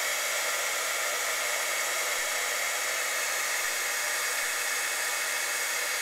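Stampin' Up embossing heat tool running steadily, a loud, even rush of blown air with a thin steady whine, heating a salt-flour-water paste on paper to dry it out.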